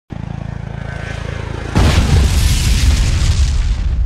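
Helicopter rotor beating steadily, then a sudden loud boom about two seconds in that slowly dies away.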